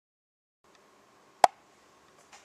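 A single sharp click about a second and a half in, over faint steady room noise with a light hum that starts just over half a second in.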